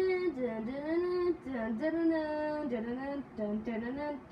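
A girl's voice singing a short wordless tune, holding notes and sliding between pitches.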